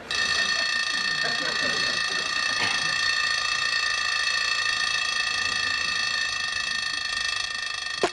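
Alarm clock ringing continuously in one steady, high-pitched ring that starts suddenly and stops abruptly after about eight seconds.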